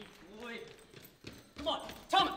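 Running footsteps on a hard floor, drawing nearer, with short bursts of a man's voice.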